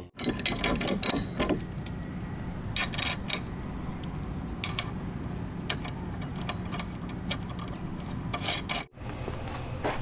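Small metal hardware clinking and tapping, a few scattered clicks at a time, as bolts, washers and nuts are handled and threaded into a steel mounting plate, over a steady low hum.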